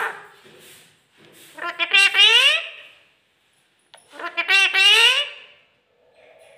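A pet rose-ringed parakeet making two drawn-out, human-like talking calls, each about a second and a half long, with a short pause between them.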